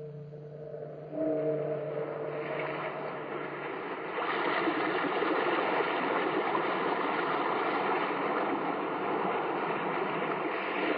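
A tolling bell, struck once more about a second in and ringing away over the next few seconds, as a sea-surf sound effect rises beneath it and then runs on steadily as the loudest sound.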